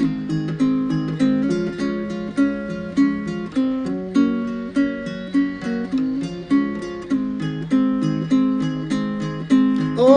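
Acoustic guitar strummed in a steady rhythm, with strong accented strums a little under two a second and changing chords, with no voice over it.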